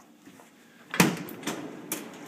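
Bottom-freezer refrigerator being handled: a sharp thump of its door or freezer drawer about a second in, then a few lighter clicks and rattles of the plastic and wire drawer parts.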